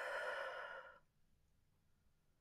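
A woman's long, breathy sigh as she breathes out, lasting about a second, while holding a yoga stretch.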